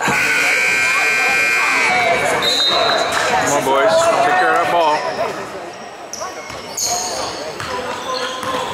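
A long shrill signal tone of about two seconds at the start, then shouting voices and a basketball dribbling on a hardwood gym floor.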